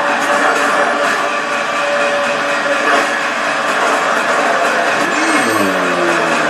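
Action-movie trailer soundtrack played loud: a dense, continuous mix of vehicle noise, effects and score, with a steady tone early on and sliding pitches near the end.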